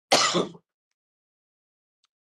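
A man clears his throat once, a short burst lasting about half a second.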